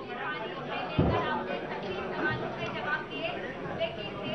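Indistinct chatter of several people talking over one another in a hall, with a single thump about a second in.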